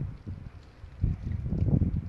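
Wind buffeting a phone microphone: an irregular low rumble, weaker at first and stronger from about a second in.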